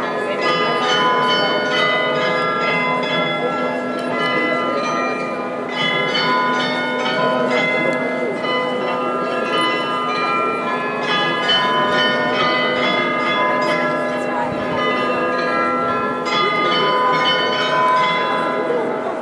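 The bells of the Munich New Town Hall Glockenspiel playing a melody, many tuned notes struck one after another and ringing on over each other.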